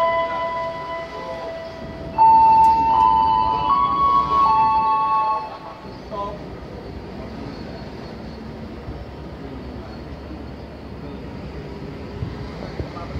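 Container freight train passing, with shrill squealing tones from the wagon wheels that jump between pitches and are loudest from about two to five seconds in, then only the steady rumble of the wagons rolling by.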